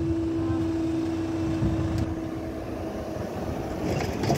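Level crossing barrier rising, its power unit giving a steady hum that stops about three quarters of the way through, over a low background rumble.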